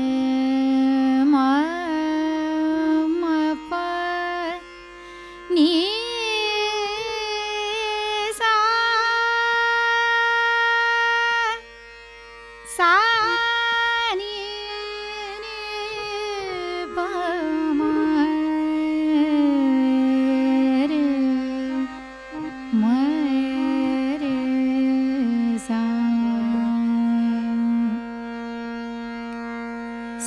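A woman singing the ascending and descending scale (aroha and avroha) of Raag Megh Malhar in Hindustani classical style. She uses the raga's five notes, with komal Ni and no Ga, and glides between long held notes over a steady drone, pausing briefly twice.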